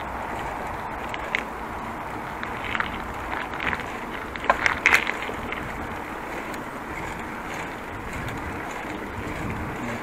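Bicycle rolling along a road: a steady rush of wind and tyre noise, with a few short clicks and rattles, the loudest cluster about five seconds in.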